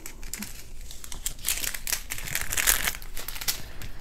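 Plastic crinkling and rustling as hands handle small resealable bags of diamond-painting drills on a plastic-covered canvas, an irregular crackle that is busiest in the middle.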